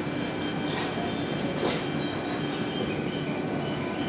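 Steady rumble and hum of an underground railway platform beside a stopped E235-1000 series electric train, with a couple of faint clicks.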